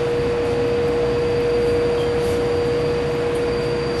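Steady machinery drone of a drilling rig heard from inside its control cabin, with a constant mid-pitched whine that holds one pitch.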